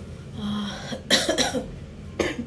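A woman clearing her throat and coughing: a short low hum, then two quick loud coughs a little past the middle.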